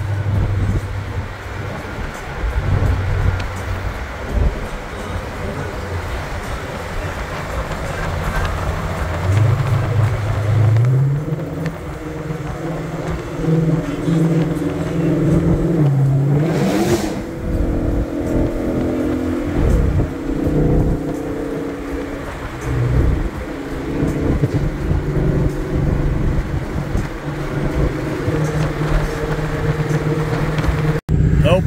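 Ford Mustang Shelby GT500's supercharged 5.2-litre V8 running while the car is driven, with road and tyre noise in the cabin. The engine pitch steps up about nine seconds in and shifts several times after, and there is a brief rising whoosh about halfway through.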